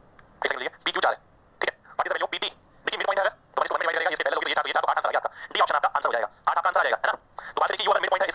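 A man talking in short phrases, his voice thin and tinny with little low end, as if played through a phone or small speaker.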